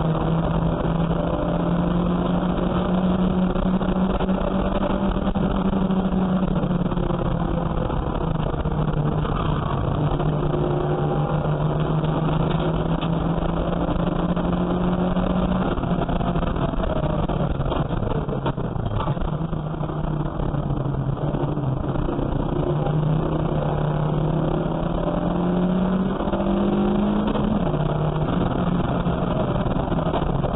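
A junior saloon race car's engine heard from inside its stripped cabin, driven hard on track. The engine note climbs and falls over and over as the car accelerates, changes gear and brakes for corners.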